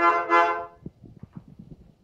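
Teppo lõõts, an Estonian diatonic button accordion, sounding a reedy chord that stops well before a second in, followed by a few faint clicks and knocks.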